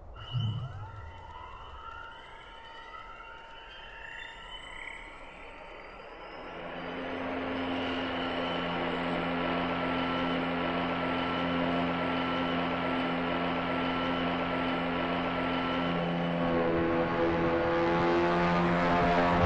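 Soundtrack music and sound effects: a low thump at the start, then several sliding tones, and from about six seconds in a steady layered drone that slowly grows louder.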